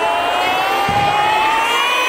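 Several children's voices hold one long shout together, slowly rising in pitch.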